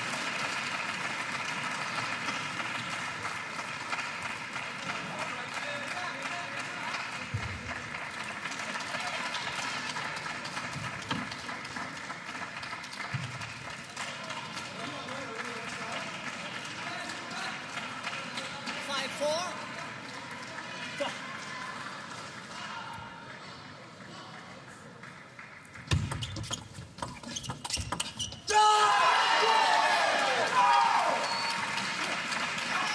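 Crowd chatter in a large arena hall, with a few scattered thumps. Near the end comes a short burst of sharp table tennis ball strikes, followed by loud shouting and cheering.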